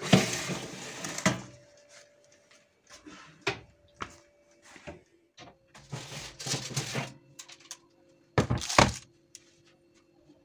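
Metal baking tray of baked lavash rolls being handled and set down on a wooden table: scraping and clatter, then two loud knocks close together near the end.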